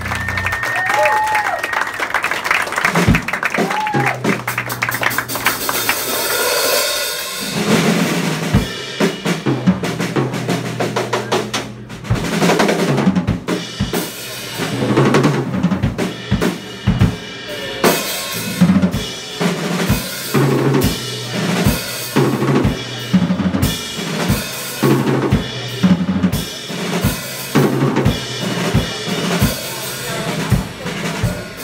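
Live band music: a drum kit playing busy, irregular fills and hits over electric bass notes. In the first few seconds a held high note and some sliding notes sound before the drums take over, about seven seconds in.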